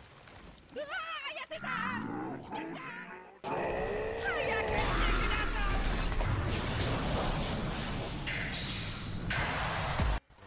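Anime soundtrack: a wavering, strained vocal cry for a few seconds, then a sudden loud rush of noise with a deep rumble about three and a half seconds in, the sound effects of a transformation and blast.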